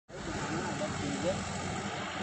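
Highway traffic noise with a steady low engine drone.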